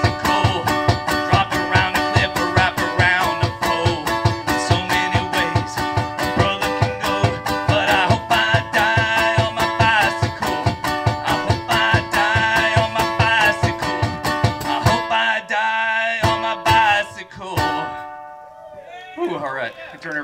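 A small acoustic stringed instrument strummed fast over a steady thumping beat of about four beats a second, live through a stage PA. The beat stops about three-quarters of the way through, a few last notes ring out, and whoops and cheers come near the end.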